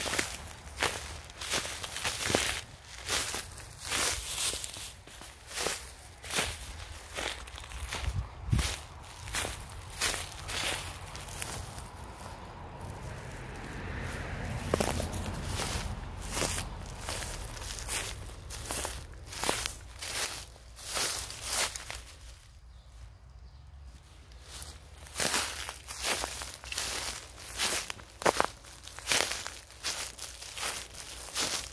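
Footsteps of a person walking over grass and dry fallen leaves, about two steps a second, with a short pause in the steps about three-quarters of the way through.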